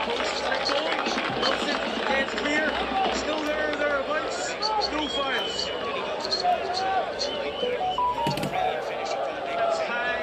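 Many voices shouting and calling over one another at a football stadium, with no single clear speaker.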